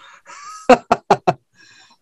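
A man laughing: a breathy exhale, then a quick run of short staccato laughs about a second in.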